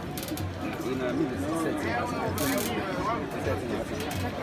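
A large crowd of students talking and calling out at once, many voices overlapping into a steady babble.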